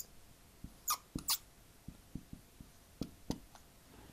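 Dry-erase marker writing on a whiteboard: light ticks and taps of the tip, with two short high squeaks about a second in.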